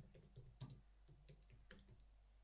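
Faint keystrokes on a computer keyboard: a quick run of key presses as a short phrase is typed.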